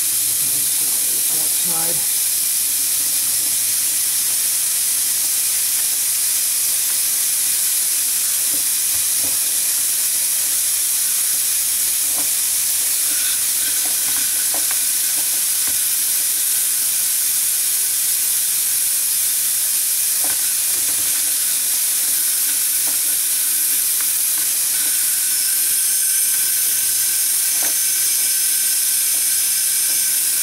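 Compressed air hissing steadily through an air-powered Vacula vacuum tool as it sucks old brake fluid out of a master cylinder reservoir, with a few faint knocks.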